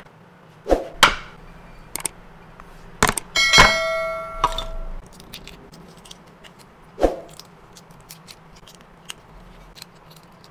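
A click, then a bright bell-like metallic ding about three seconds in that rings for over a second. Around it are a few light knocks from hands working on a plastic cutting mat.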